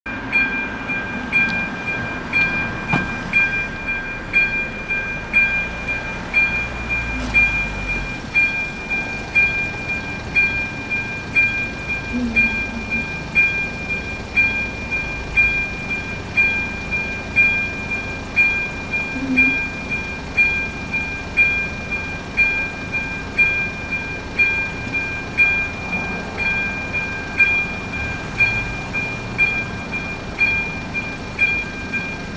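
Electronic warning bell of an AŽD 97 railway level-crossing signal, ringing steadily at about one stroke a second. It is the warning for an approaching train.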